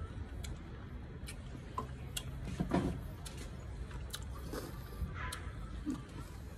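A person chewing a bite of raw iba (bilimbi), a very sour fruit, with irregular small clicks and crunches.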